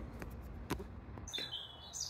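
Faint light clicks of a steel M5 stud being turned into a small brass clevis by hand. About one and a half seconds in, a high thin steady tone begins.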